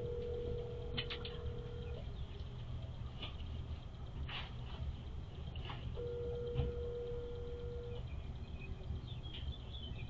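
Telephone ringback tone playing through a phone's speaker: two rings, each a steady hum about two seconds long with four seconds between them, the sign of an outgoing call ringing unanswered on the other end.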